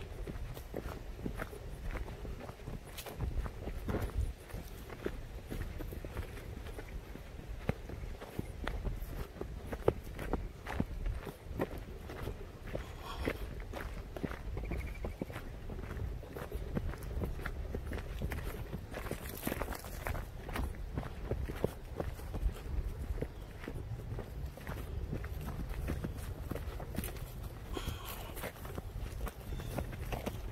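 Footsteps of a person walking down a grassy dirt path, irregular steps over a steady low rumble.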